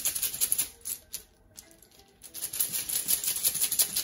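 Tarot cards being shuffled by hand: two runs of rapid papery flicking, the first stopping about a second in and the second starting a little after two seconds.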